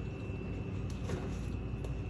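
Low steady background hum with a faint thin high whine over it: room tone.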